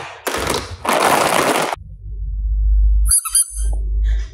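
Hard plastic toy shell cases rattling and clattering against each other in a plastic basket as a hand rummages through them, then a low rumbling thud, and a quick run of short high squeaks about three seconds in.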